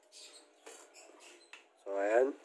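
Faint handling noise with a couple of light clicks, then a short voice sound falling in pitch near the end.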